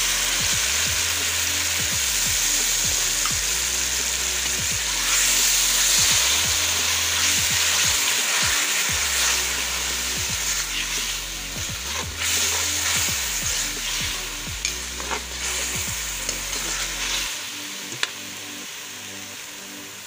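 Blended tomato frying in hot oil with onions and green chillies in a metal pan, sizzling loudly, with a metal spoon stirring and clicking against the pan. The sizzle eases off toward the end.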